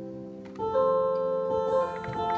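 Zithers and electric guitar playing a slow instrumental passage: plucked notes ring on, and a louder set of notes comes in about half a second in.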